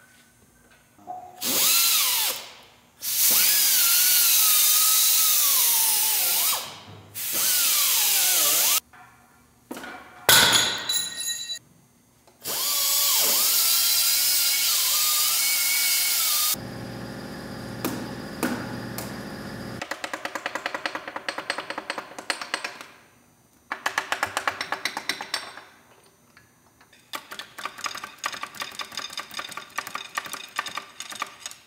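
A hand-held power wrench spins the connecting-rod cap bolts out of a John Deere 4230 engine block in several long bursts, its whine rising and falling as the trigger is worked. In the later part a hand ratchet clicks rapidly in short, rhythmic bursts.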